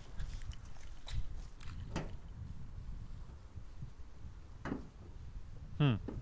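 Footsteps and a few light knocks and clicks as a Citroën C3 Picasso's bonnet is released and lifted, over a low rumble of handling noise on the handheld microphone.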